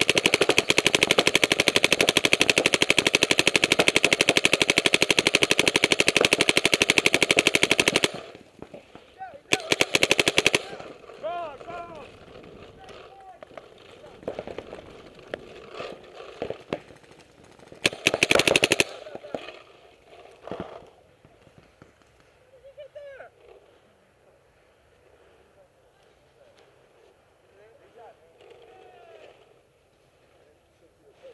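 Paintball marker firing a fast, continuous string of shots for about eight seconds, then two short rapid bursts about ten and eighteen seconds in, with scattered single shots between.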